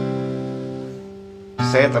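Acoustic guitar with a C major chord ringing out and slowly fading, then struck again about one and a half seconds in.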